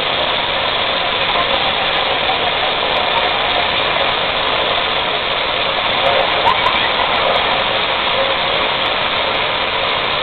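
Waterfall: a steady, even rush of falling water.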